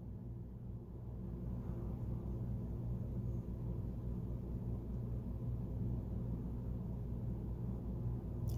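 Room tone: a steady low hum with no distinct events.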